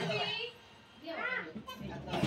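Young children's voices chattering in a small classroom, with a brief lull about half a second in before a child's voice rises again.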